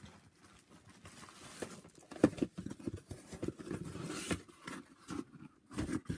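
Handling noise of cardboard Funko Pop boxes being picked up and moved about: irregular light knocks, taps and rustles, sparse at first and busier from about two seconds in.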